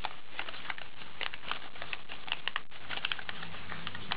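An accordion-folded sheet of paper, cut with scissors, being unfolded by hand: a run of small, irregular crackles and rustles as the pleats open out.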